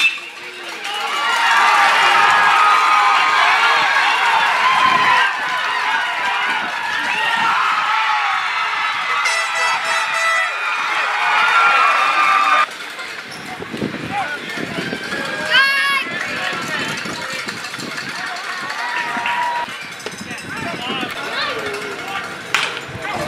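Crowd and dugout cheering and shouting after a base hit, many voices at once, until it cuts off abruptly about thirteen seconds in. After that come quieter scattered voices and ballpark chatter, with one brief loud call a few seconds later.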